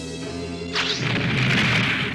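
Background score music with held notes, then about three-quarters of a second in a loud crashing impact sound effect that lasts to the end, the sound of the glowing magic bubble being brought down to the floor.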